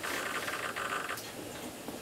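Powered RC aileron servos giving a steady, fast electrical buzz that cuts off suddenly a little over a second in.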